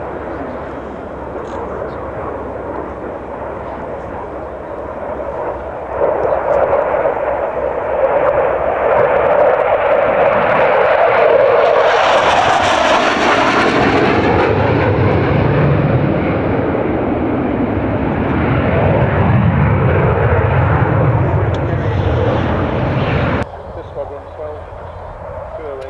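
Jet noise from a Blackburn Buccaneer's two Rolls-Royce Spey turbofans in flight. The sound grows louder about six seconds in and peaks with a hiss around the middle as the aircraft passes closest. It then turns to a deeper rumble as it draws away, and cuts off shortly before the end.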